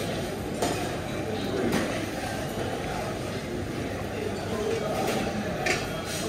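Busy buffet restaurant ambience: an indistinct murmur of diners' and staff's voices, with a few sharp clinks of dishes and utensils.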